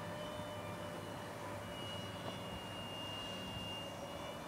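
Electric ducted fan of a small RC F-18 Hornet jet in flight at a distance: a thin high whine that is strongest in the middle, over steady wind noise on the microphone.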